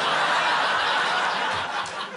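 Studio audience laughing, a crowd's laughter that swells at once and dies down near the end.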